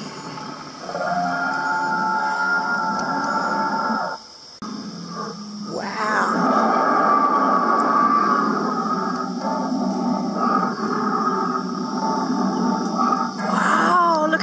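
Soundtrack of an animatronic dinosaur display played through speakers: recorded creature roars and growls mixed with music, with a short drop in level about four seconds in.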